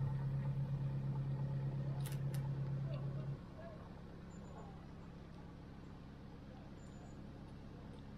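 A steady low mechanical hum that cuts off suddenly a little over three seconds in, leaving a quiet outdoor background. A couple of short clicks are heard about two seconds in.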